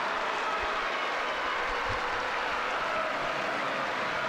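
Football crowd applauding and cheering a goal, a steady wash of noise.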